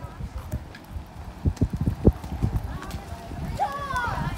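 Footsteps of several people walking on a paved street: irregular short thuds, thickest in the middle. A child's voice comes in briefly near the end.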